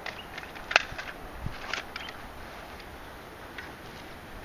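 An AR-15 magazine being released and pulled from the magwell: one sharp click a little under a second in, then a few fainter clicks around two seconds.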